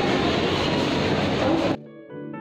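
Steady loud mechanical noise inside a moving passenger lift, cut off suddenly near the end by soft background music with sustained tones.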